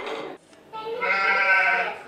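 A young child's voice making one drawn-out vocal sound at a steady, high pitch, lasting about a second and starting just under a second in.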